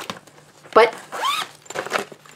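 Zipper of a clear plastic zip pouch being pulled, heard as a short run of small clicks near the end, along with the plastic being handled.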